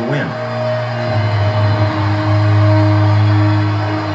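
Film soundtrack music: sustained, slowly swelling held chords over a deep low note, building suspense, heard through the room's speakers.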